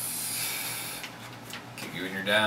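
A sheet of paper rustling as it is handled, then laid down on a table, with a few light taps near the end.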